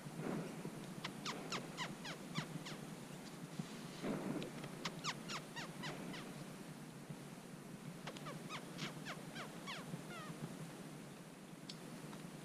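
A small animal's chirping calls: runs of short, high chirps, each sweeping quickly downward, coming in several bursts of a few a second. There are brief rustles near the start and about four seconds in.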